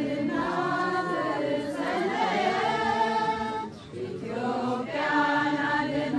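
Ethiopian Orthodox choir of men and women singing a mezmur (church hymn) together in long held notes, with a short pause a little before four seconds in before the next phrase.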